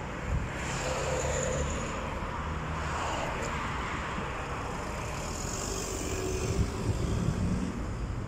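Steady rumble of road traffic, growing a little louder about a second in and again near the end.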